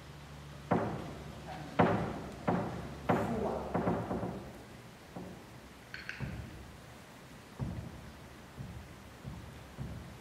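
A series of hollow thumps, five in the first four seconds about half a second to a second apart, each ringing on briefly in the hall, then a fainter one near the eighth second.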